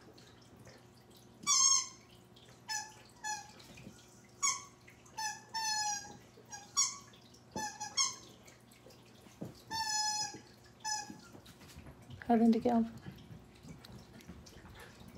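Rubber squeaky toy squeaked over and over as a West Highland terrier chews it: about a dozen short, high squeaks, each dipping slightly in pitch, in irregular bunches.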